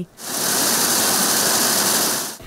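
Maize milling plant machinery running: a steady, hissing mechanical rush that cuts in abruptly just after the start.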